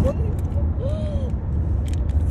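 Steady low road and engine rumble inside a moving car's cabin, with a short rising-and-falling vocal sound about a second in.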